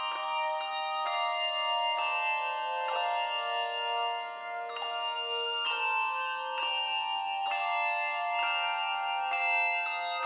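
Handbell choir playing a slow hymn tune: struck chords that ring on, a new chord about every second.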